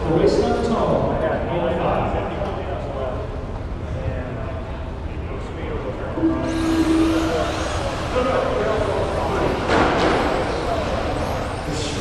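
A short, steady start beep about halfway through, and at once a field of electric radio-controlled touring cars launches off the grid: a dense high hiss of motors and tyres on the carpet that carries on, with a sharp knock near the end and voices in the hall.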